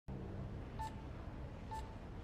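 Hospital bedside patient monitor giving its heartbeat beep: two short beeps at the same pitch, about a second apart, in time with the pulse on its screen, over a low steady room hum.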